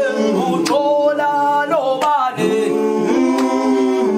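A cappella choir singing long held notes, changing pitch twice.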